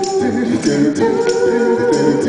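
Male a cappella vocal group singing wordless held chords in close harmony, live through the hall's sound system. A steady percussive beat of short sharp strokes sounds about twice a second.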